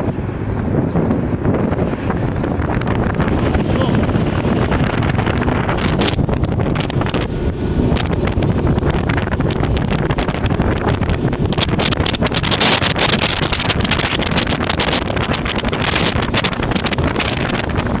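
A BTR-80 armoured personnel carrier's V8 diesel engine runs steadily as the vehicle drives along, heard from on top of the hull. Wind buffets the microphone throughout, and more heavily in the second half.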